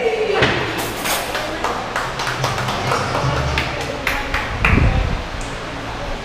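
Restaurant dining-hall din: scattered clinks and taps of dishes and cutlery over background music and voices, with one low thump just before five seconds in.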